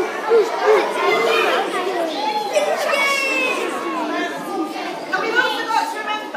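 Many children's voices at once, an audience chattering and calling out over each other in a large hall.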